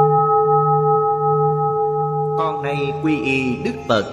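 A struck Buddhist bell rings on with a long, slowly fading tone. About two and a half seconds in, a gliding melody begins over it.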